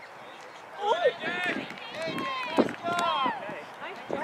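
Distant, high-pitched voices shouting and calling out across a soccer field: several overlapping calls that rise and fall in pitch, starting about a second in.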